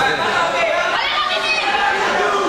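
Several voices of onlookers talking and calling over one another, in a large hall.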